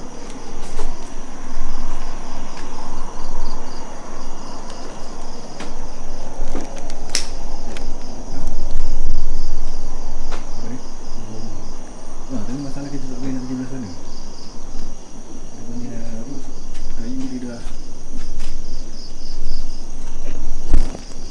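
Night insects, crickets, trilling steadily at a high pitch over the footsteps and rustle of someone walking. A low voice murmurs briefly in the second half.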